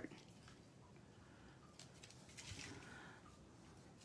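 Near silence, with faint rustling about two seconds in as a roll of glue dots and a small paper envelope are handled.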